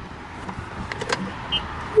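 Golf cart moving along a paved path, its running noise steady, with a sharp click a little over a second in.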